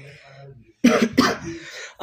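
A man coughs twice, loud and close to the microphone, about a second in.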